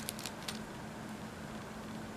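A few light clicks in the first half-second as a jumper wire is picked up off the table, over a steady faint background hum.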